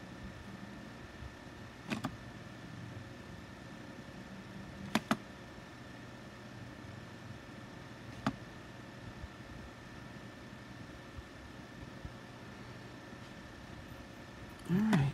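Fine-tip pen drawing on paper, heard faintly as a few short taps of the nib: one about two seconds in, a quick double tap around five seconds and another around eight seconds, over a steady low hum.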